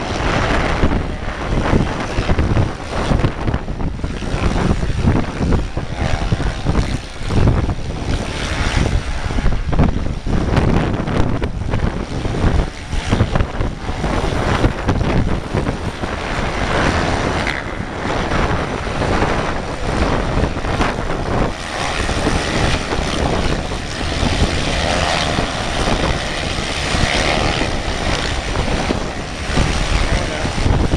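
Storm wind buffeting the microphone over the distant drone of many dirt bike engines racing on the sand. The engine drone grows stronger about halfway through.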